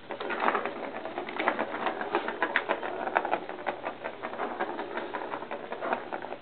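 The ball of a Star Chaser Turbo cat toy rolling and rattling around its plastic track as a kitten bats it, a dense, irregular run of clicks and clatter.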